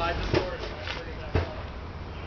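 Brief, indistinct voice, with two sharp knocks about a second apart standing out as the loudest sounds.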